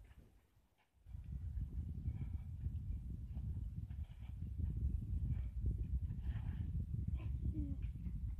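Low, fluctuating rumble of wind buffeting the microphone, starting abruptly about a second in and continuing to the end.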